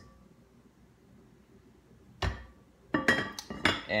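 A glass cake dome and stand being handled over a baking tin: quiet at first, then a dull knock about two seconds in, followed near the end by a quick run of sharp glass-and-metal clinks.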